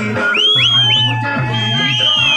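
Loud live music played through a PA system: a steady, repeating bass line under high, sliding melody notes that rise and fall, twice.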